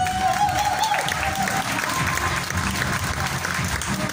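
Audience applauding over music playing through a sound system; a held melody note in the music ends about a second and a half in.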